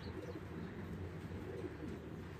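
Domestic pigeon cooing, two low wavering coos, the second near the end.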